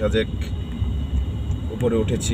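Low, steady road and engine rumble heard inside a moving car's cabin, with a brief voice at the start and again near the end.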